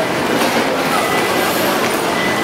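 Steady, dense din of a busy railway station concourse, with the running noise of a train on the tracks mixed with the bustle of the crowd.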